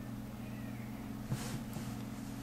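Steady low hum of room tone, with a faint short sound about one and a half seconds in.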